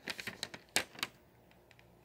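A quick run of light clicks and taps, the loudest about three quarters of a second in, then quiet: handling noise as the camera is moved over the notebook.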